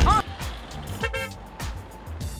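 Quiet background music with a brief horn toot about a second in.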